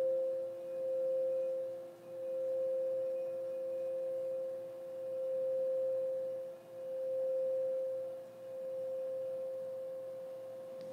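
Frosted crystal singing bowls being rimmed with mallets, ringing a sustained hum of two notes, the higher one stronger. The sound swells and dips in slow waves every couple of seconds.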